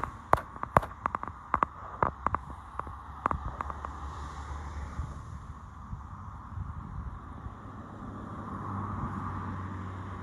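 A run of sharp knocks over the first few seconds, typical of a phone being handled while walking, then a steady hum of distant road traffic that grows a little louder near the end.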